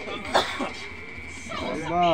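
People's voices in a room: a short cough about a third of a second in, then a voice calling out with a falling pitch near the end.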